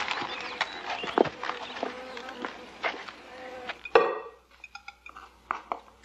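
Garden ambience with birds calling and footsteps on a path. About four seconds in, it changes abruptly to a quiet room where plates and cutlery clink a few times as food is served.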